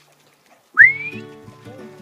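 A single loud, rising whistle about three-quarters of a second in: a person whistling to call the dog, over background music with sustained notes.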